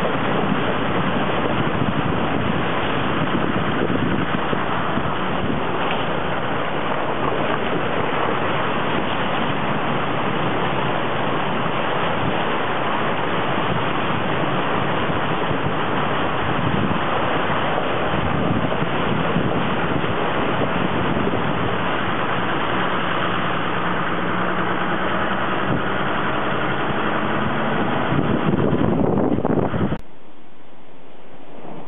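Wind rushing across the microphone over a running engine, as heard from a moving vehicle. It holds steady at one loudness and cuts off suddenly at the end.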